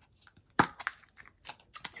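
Small plastic craft-storage containers handled on a table: one sharp plastic click about half a second in, then a few lighter clicks and rustles as a snap-on lid is worked off a container.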